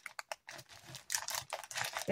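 Plastic sleeve crinkling and crackling as a paper pattern is pulled out of it, a scatter of small crackles in two short spells.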